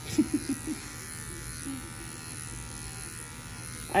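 Electric dog grooming clippers with a #20 blade running steadily, a constant buzz as they trim the coat on a cocker spaniel's ear.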